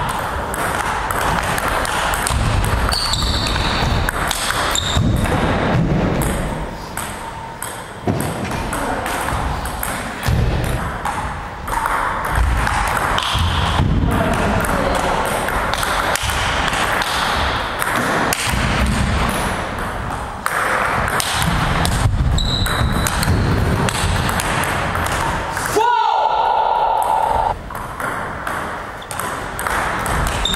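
Table tennis ball hit back and forth in a rally, a quick run of sharp clicks as it strikes the rackets and bounces on the table. Near the end comes a held tone, rising at first and then steady, lasting about a second and a half.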